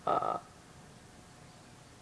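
One short vocal 'uh' from a person in the first half-second, followed by faint background hiss.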